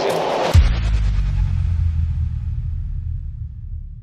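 A sudden deep impact hit about half a second in, a cinematic sound effect for a title card, followed by a low rumble that slowly fades away.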